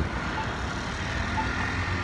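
Road traffic: passing cars' engines and tyres, a steady low rumble.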